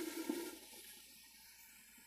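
Faint hiss of simmering rice liquid in a pan, dying away to near silence about half a second in as the glass lid goes on over low heat.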